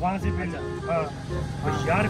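A man talking in Hindi/Urdu, with background music underneath.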